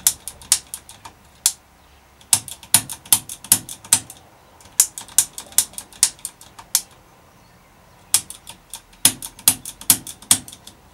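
Shimano Altus ST-CT90 trigger shifter clicking through its gears: quick runs of sharp ratchet clicks in about four bursts as the levers are pushed and pulled up and down the six positions. The freshly cleaned pawls are engaging, so the shifter seems to be working.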